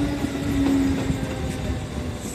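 Kintetsu commuter train running past on the near track: wheel and rail rumble with a steady motor whine that sinks slightly in pitch and fades near the end.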